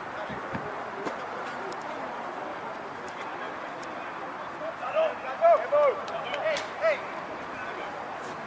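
Several short shouted calls from voices on an outdoor football pitch, a little past the middle, over a steady open-air hiss.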